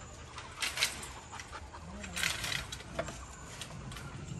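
Vine foliage rustling and wire netting rattling in a few short bursts as an overgrown trellis of pipes and chicken wire is pulled and shaken by hand.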